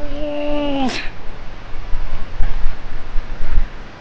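A person's long drawn-out wail, falling slowly in pitch and ending in a quick upward squeak about a second in, like a strained, playful cry while hanging from a bar. After it, low rumbling noise with several loud bumps on the microphone.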